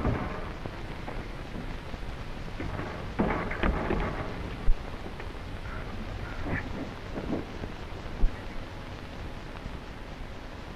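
Steady hiss and crackle of an old optical film soundtrack, with faint scuffling and a few knocks, one sharper pop about halfway, as a limp body is heaved into a biplane's open cockpit.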